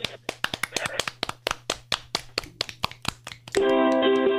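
A few people clapping, quick uneven claps. Near the end a ukulele starts playing.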